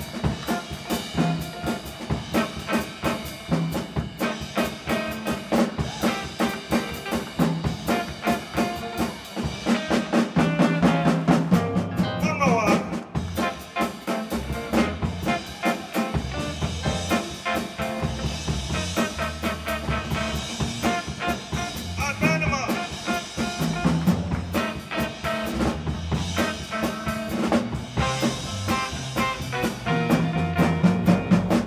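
Live blues band playing an instrumental passage: a drum kit keeping a steady beat under horns and keyboard.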